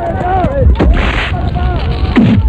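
Film fight-scene sound effects: a short, heavy hit or whoosh about a second in, over a low rumble and wavering cries.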